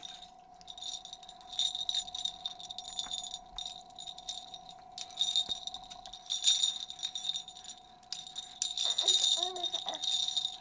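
Small metal jingle bells on a plastic baby ring toy jingling in irregular bursts as an infant shakes it, several shakes with short pauses between.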